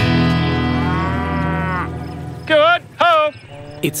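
A guitar music cue holding its last chord, which fades out about halfway through. Then come two short moos from dairy cows, half a second apart, the loudest sounds here.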